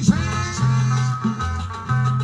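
Cumbia music led by a Peruvian-style guitar melody over a repeating bass line, with a short shouted phrase from a man at the start.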